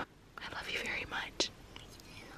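Soft whispering: a few short, breathy whispered syllables at low level.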